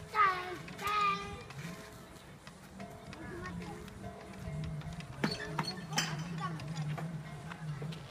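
A child's high voice calls out briefly near the start, with children playing over steady background music. Two sharp clicks come about five and six seconds in.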